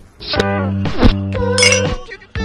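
Background music with steady low notes, and a bright clink near the end as a glass beer bottle touches a baby bottle in a toast.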